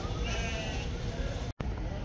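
Sheep bleating: one wavering bleat in the first second.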